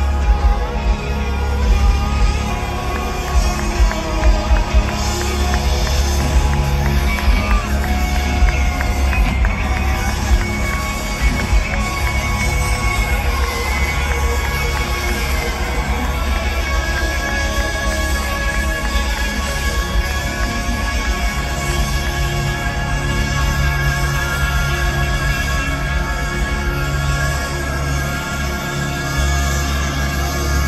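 Live rock band playing through a large concert PA system, heard from within the crowd, with sustained instrumental tones over heavy bass.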